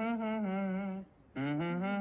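A person humming a slow tune without words: held notes that slide between pitches, broken by a short pause about a second in.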